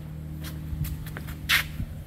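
Steady low mechanical hum, with light handling noise and a short hiss about one and a half seconds in.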